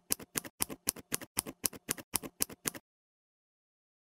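Scissors-snipping sound effect: a rapid, even run of sharp clicks, about four a second, that stops suddenly a little under three seconds in.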